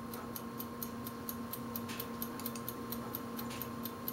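Faint, even ticking, several ticks a second, over a steady low electrical hum.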